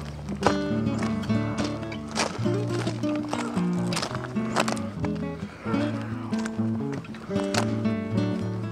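Background music: held instrumental notes that change pitch every second or so, with sharp percussive hits.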